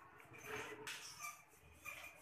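Faint scratching and tapping of chalk on a blackboard as a line of words is written.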